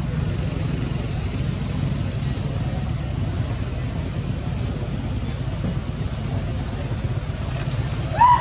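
Steady outdoor background noise: a low rumble with a hiss over it.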